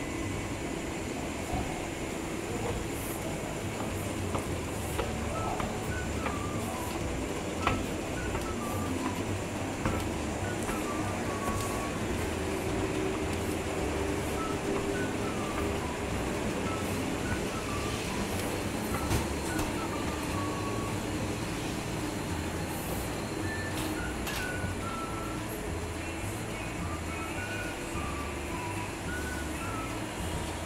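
Steady low rumble and hum of a rail station and its running escalator, with faint music playing over it.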